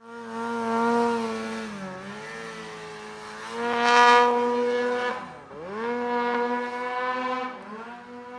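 Polaris snowmobile engine running at high revs, its pitch dropping sharply and climbing straight back three times as the throttle is eased off and reopened; loudest about four seconds in.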